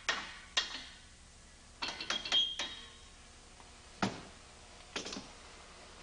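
Steel parts of a Liftomatic drum-handler clamping unit knocking and clanking as the upper block is worked out of the frame and handled on the workbench. There are a few separate knocks, a quick cluster about two seconds in with a short ringing note, and single clanks about four and five seconds in.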